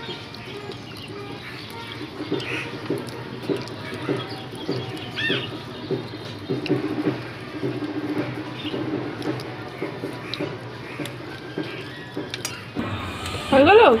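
Chewing, slurping and mouth sounds of people eating rice and chicken curry by hand, with soft clicks of fingers on steel plates. A bird chirps briefly about five seconds in.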